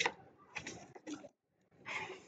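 Paper flashcards being handled and flipped through, in a few short, soft rustles.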